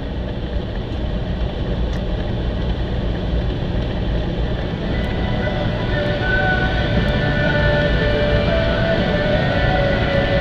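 A vehicle driving along a snowy track, with a steady low engine and road rumble. From about halfway in, a few long held tones sound over it.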